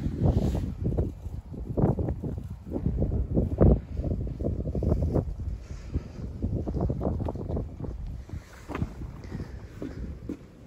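Wind buffeting the microphone in uneven gusts, a low, surging noise that rises and falls throughout.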